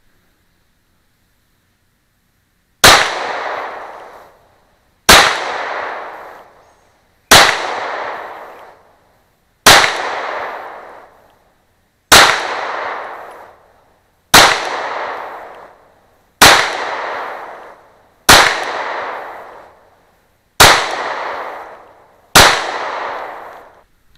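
Glock 26 subcompact 9mm pistol firing ten single shots, spaced about two seconds apart, starting about three seconds in. Each shot is sharp and loud and fades away over about a second and a half.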